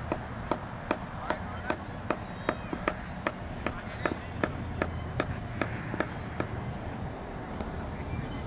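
A steady run of sharp clacks, about two and a half a second, fading after about six seconds and stopping near the end.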